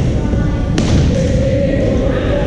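A badminton racket strikes a shuttlecock once, a sharp hit about a second in, echoing in a large sports hall. Under it runs a steady rumble of hall noise and voices, and just after the hit a steady mid-pitched tone starts.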